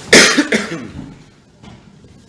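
A person coughing twice close to the microphone: a loud first cough, then a shorter second one about half a second later.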